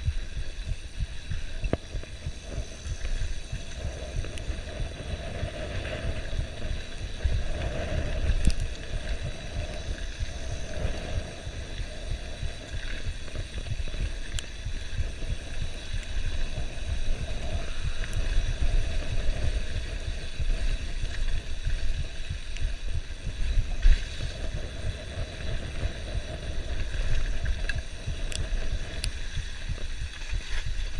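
Wind buffeting the camera microphone over the rumble and rattle of a mountain bike descending a dirt trail at speed, with a few sharp knocks from bumps, the loudest about 24 seconds in.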